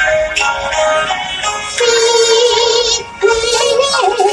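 Yue opera (Shaoxing opera) music. Steady pitched instrumental lines play first, and about two seconds in a held sung note with a wide, wavering vibrato enters over the accompaniment. The voice breaks off briefly near the three-second mark and then resumes.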